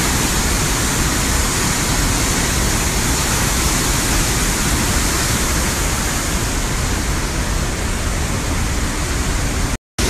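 Trümmelbach Falls pouring through a narrow rock gorge: a loud, steady rush of falling water. It cuts out for a moment near the end.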